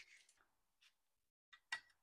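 Near silence, with one short faint click near the end.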